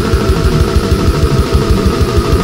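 Brutal death metal recording: distorted electric guitars held over very fast, even kick drumming, about ten hits a second.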